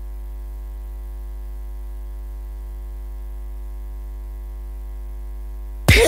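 Steady electrical mains hum: a low, even drone with a ladder of overtones above it, filling a gap in the broadcast audio. Music cuts back in suddenly at the very end.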